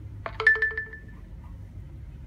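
A short electronic notification chime from an HTC U11 smartphone, a quick cluster of notes settling into one held tone that fades within about half a second, as the phone reaches its home screen.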